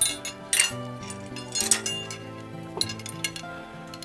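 Metal hardware on a traction belt clinking several times as it is hooked up, over steady background music.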